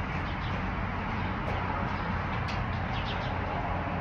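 Steady outdoor background noise, a low rumble under a hiss, with a few faint short bird chirps.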